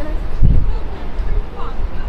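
Busy city street ambience: a steady low traffic rumble with a heavy thud about half a second in, and brief snatches of passersby's voices near the start and again near the end.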